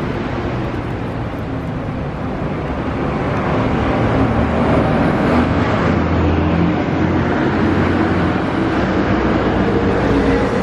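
City street traffic: a steady wash of passing car engines and tyre noise, growing louder about four seconds in.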